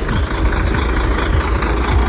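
Truck engine idling steadily, a continuous low rumble.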